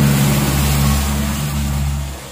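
A motor running steadily: a low, even drone with a hiss above it.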